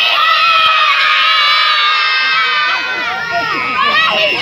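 A crowd of children shouting 'καλησπέρα' ('good evening') together at the top of their voices, many voices held in one long loud shout that tails off near the end.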